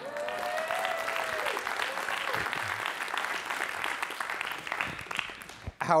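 Audience applauding steadily, with a voice or two calling out over the clapping in the first second and a half, then thinning out near the end.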